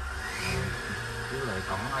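The JAC Sunray van's Cummins turbo-diesel engine running, heard from inside the cabin as a low hum under a rushing noise. A short rising whine comes in early, and a man's voice comes in near the end.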